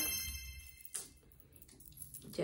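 A bright metallic chime ringing on several high tones and fading away over the first second, then a single short tick about a second in.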